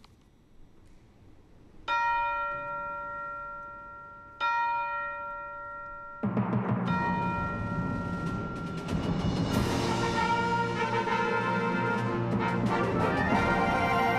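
Concert band opening a fanfare: two struck bell tones about two and a half seconds apart, each left to ring and fade, then the full band with brass and percussion comes in about six seconds in and grows louder.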